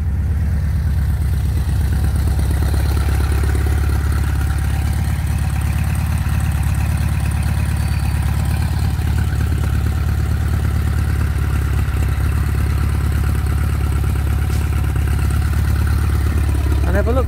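1984 Volkswagen Transporter's 78 PS water-cooled flat-four petrol engine idling steadily, sounding healthy and smooth.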